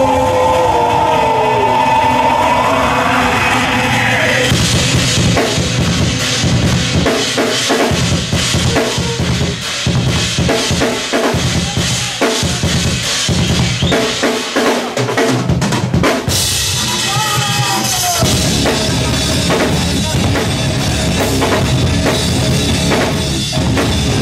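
Live rock band playing loudly: electric guitar, bass guitar and drum kit. Sustained guitar notes bending upward open the passage, then dense drumming takes over from about four seconds in, and the full band comes back in around the middle.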